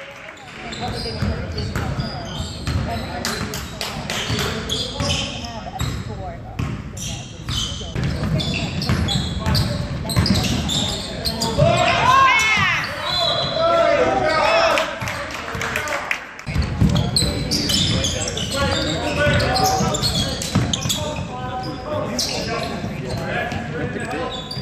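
Live basketball game sounds in a gym: a ball bouncing on the court, sneakers squeaking, loudest in a cluster of squeaks about halfway through, and indistinct shouts from players and sideline spectators, echoing in the hall.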